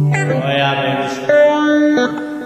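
Live band music led by an electric guitar, playing held, ringing notes. The notes change about a quarter-second in and again about a second and a quarter in.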